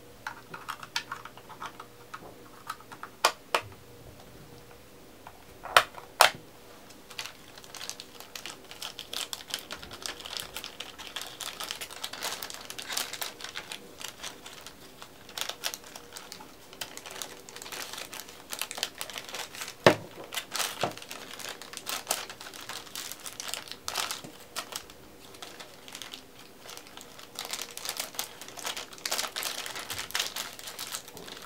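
A few sharp plastic clicks from a TV remote being handled, then thin clear plastic bag crinkling and rustling continuously as the remote is worked into it for packing.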